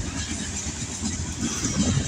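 Covered hopper cars of a freight train rolling past close by: a steady rumble of steel wheels on rail, with a louder clatter building near the end as a set of wheels passes.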